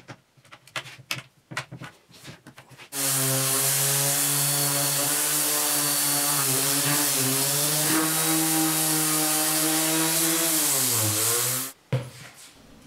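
A few light clicks and knocks from bar clamps being set on a wooden frame, then a random orbital sander starts suddenly and runs steadily on the chestnut frame. Its pitch sags briefly under load near the end and recovers before the sander cuts off.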